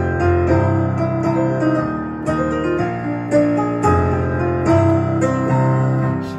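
Digital piano playing the instrumental introduction of a song: chords over low bass notes, changing about every half second.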